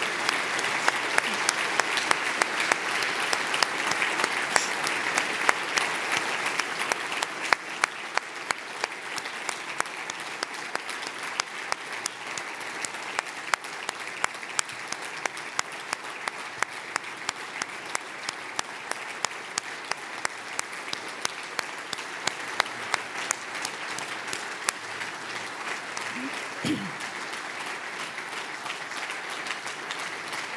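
A large standing audience applauding steadily: a standing ovation. It is fullest in the first several seconds, then thins, with separate claps standing out.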